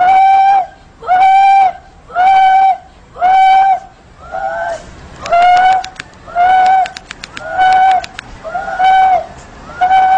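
A woman wailing in repeated high, level-pitched cries, about one a second, each held for over half a second. A few sharp clicks are heard in the middle.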